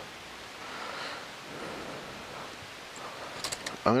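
Clothes and hangers being handled in a closet: soft, steady fabric rustling, with a few light clicks near the end.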